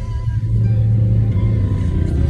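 Low road and engine rumble inside a moving car's cabin, swelling in the middle, with music playing faintly over it.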